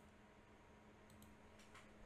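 Near silence: faint room tone with a low steady hum and a few faint clicks.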